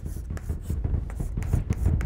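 Chalk on a blackboard: a quick series of short strokes and taps as an asterisk is drawn.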